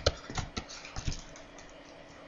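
A stylus clicking and tapping against a tablet while writing by hand: a quick run of sharp clicks in the first second or so, then only a few faint ones.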